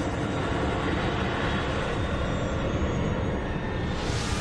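A steady, deep rumbling noise with a few faint held tones above it.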